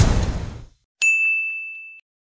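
A whoosh sound effect fading out, then about a second in a single bright ding of a notification-bell sound effect that rings on and slowly fades, the bell cue of a subscribe-button animation.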